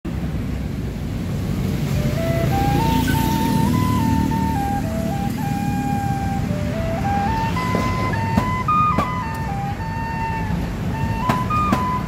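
Khlui, a Thai bamboo duct flute, playing a slow melody of held notes that step up and down, starting about two seconds in. Under it runs a steady low rumble of street noise, and a few sharp clicks come in the second half.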